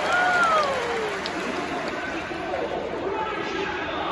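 A stadium public-address announcer's voice reading out the starting lineup, with one long drawn-out call that falls in pitch in the first second, over the steady murmur of a sparse crowd.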